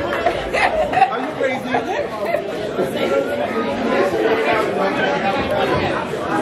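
Crowd chatter: many voices talking and calling over each other in a large hall. A low bass sound cuts off about a second in.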